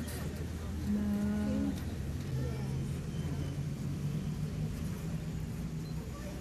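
A woman wailing in grief. There is a short held cry about a second in, then a long, low, drawn-out moan that slowly rises in pitch, over a steady background of crowd and street noise.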